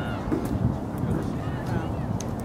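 A few brief, high-pitched shouted calls from girls on the soccer field, one right at the start and another near the end, over a steady low outdoor rumble.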